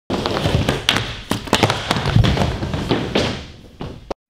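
Skateboard wheels rolling on a wooden mini ramp, with a run of sharp knocks and thuds as the skater falls. The rolling fades out in the last half second.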